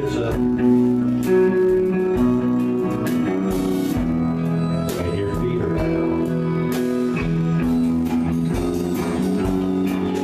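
Live country band playing a slow song: electric guitars and bass guitar over a drum kit, with notes held at steady pitch and regular drum hits.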